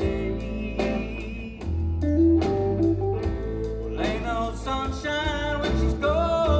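Live band playing a slow blues-style song: sustained bass and a drum beat about every 0.8 seconds, under a bending lead melody with vibrato.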